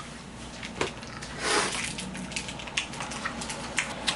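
Wet mouth clicks and smacks as a hard candy is sucked, with a short rush of noise about a second and a half in.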